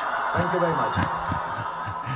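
A man chuckling in several short breaths over the steady noise of a large auditorium crowd.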